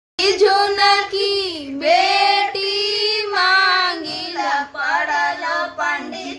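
A single high-pitched voice singing a Chhath devotional folk song (Chhath geet) to Chhathi Maiya, with long held, wavering notes and no beat.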